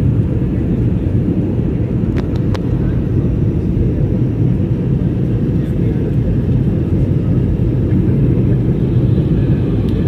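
Steady cabin noise of a jet airliner on approach to land: an even, low rumble of engines and airflow heard from a window seat. A few faint clicks come about two seconds in.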